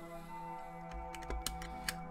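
Quiet background music of held tones, with several light plastic clicks and taps as a snap-on battery cover is fitted onto a toy robot hand's plastic battery box.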